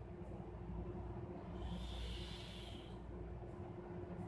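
A single breath, heard as a soft hiss of air lasting about a second and a half, over a low steady hum.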